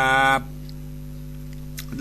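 A man's voice ends a long, held, sung syllable of a sermon chanted in a northern Thai folk melody. After about half a second only a steady electrical hum remains.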